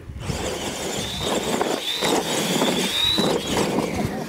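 Electric RC monster trucks of the Tamiya Clod Buster kind launching off the start together and racing across dirt: a high motor-and-gear whine that wavers and rises, over the scrabbling noise of their tyres. It starts suddenly at the launch.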